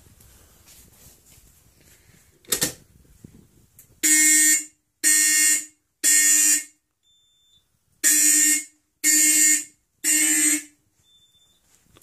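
Simplex 4051 fire alarm horn sounding in the Code 3 temporal pattern: three blasts a second apart, a pause, then three more, starting about four seconds in. A brief knock comes just before the horn starts.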